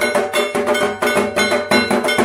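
Dhak drums beaten in a fast, even rhythm, with a ringing metallic tone sounding over the beats.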